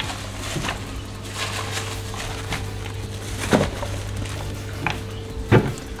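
Household handling noises: a cabinet drawer and things being moved, giving a series of short knocks and clunks, over a steady low hum that stops shortly before the end.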